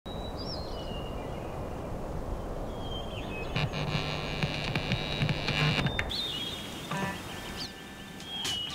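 Birds chirping in short high gliding calls over a steady outdoor rumble, with a louder steady hum from about three and a half to six seconds in.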